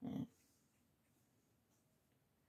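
A short nasal hum or breath from a woman, lasting about a quarter second, followed by near silence.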